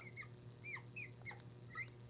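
Felt-tip marker squeaking on a glass lightboard as letters are written: a run of short, faint chirps, one after another.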